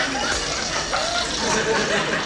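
Studio audience laughter, a steady wash of many voices.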